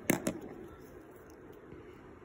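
Two quick sharp clicks just after the start, then faint handling rustle: a marker and paper being handled close to the microphone.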